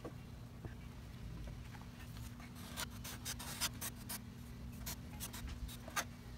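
Faint, scattered scratchy ticks and scrapes of a wood-filler squeeze tube's plastic nozzle drawn along a crack in a wooden tabletop as the filler is pressed in, busier from about two seconds in.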